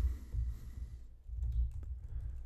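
Typing on a computer keyboard: a quick, uneven run of keystrokes with dull low thuds.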